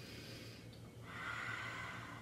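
A woman taking a slow deep breath: a faint inhale through the nose, then a steady, audible breath out through the mouth starting about a second in.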